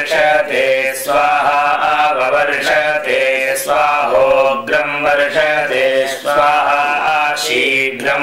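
A man chanting Sanskrit Vedic mantras in a continuous, even recitation on a level pitch.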